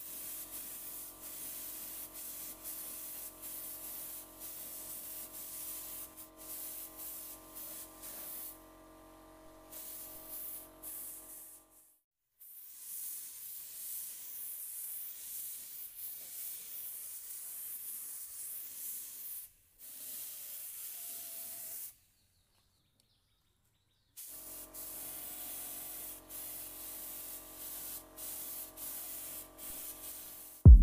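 Compressed-air paint spray gun spraying coats of paint, the spray stopping and starting as the trigger is pulled and let go, over a faint steady hum. It breaks off into near silence a few times around the middle.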